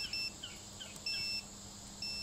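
Digital multimeter beeping on continuity as its probe touches one 4 A Pico fuse wire after another on an 18650 battery pack. There is a quick double beep at the start and a longer single beep about a second in. Each beep shows that the fuse conducts and is intact.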